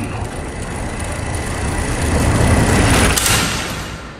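A swelling rush of noise, a trailer sound-design riser. It builds in loudness to a bright whoosh about three seconds in, then fades away.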